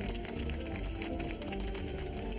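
Background music with sustained low notes, overlaid by rapid, dense clicking ticks.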